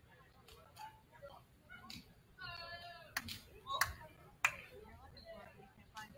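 Basketball gym sounds during a break in play: scattered voices, a short held call with a wavering pitch about two and a half seconds in, and several sharp smacks in the second half, the loudest about four and a half seconds in.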